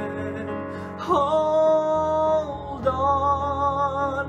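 Music: a male voice sings two long held notes over instrumental accompaniment, the first starting about a second in with a slight upward bend.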